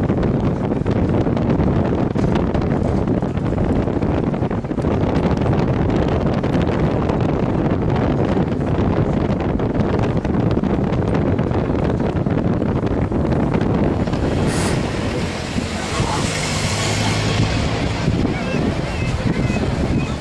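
Wind rumbling on the camera's microphone, with the chatter of a crowd of people behind it.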